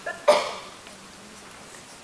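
One short, sharp vocal burst from an elderly man about a quarter of a second in, like a brief cough or chuckle, followed by quiet room tone.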